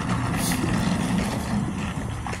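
A motor vehicle engine idling steadily, an even low hum.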